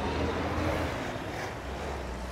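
Toyota Hilux engine running steadily at low revs, under a haze of wind noise on the microphone.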